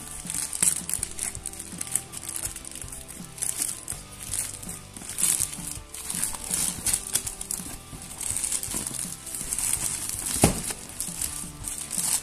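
Plastic mailer bag crinkling and tearing as it is ripped open by hand, with one sharper crackle near the end, over background music.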